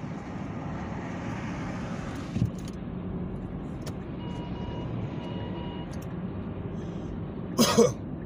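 Steady road and tyre noise inside a moving car's cabin, with a soft knock about two and a half seconds in and two faint short tones around the middle. A man coughs near the end.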